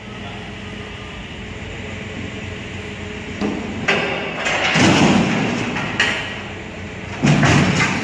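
A forklift's engine runs steadily while a heavy machine tips off a truck bed and comes down with loud metallic crashing and banging. The loudest crashes come about five seconds in and again near the end.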